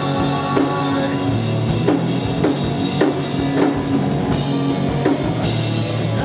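A rock band playing live on amplified electric guitars, bass and a drum kit: an instrumental stretch with the drums striking about twice a second under steady held guitar and bass notes.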